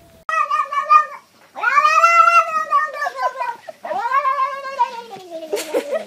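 A domestic cat meowing: three drawn-out meows, the first short and level, the next two long and sliding down in pitch.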